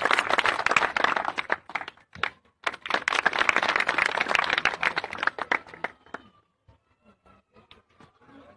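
Onlookers clapping and applauding in two bursts: the first fades about a second and a half in, the second starts again a second later and dies away near the end.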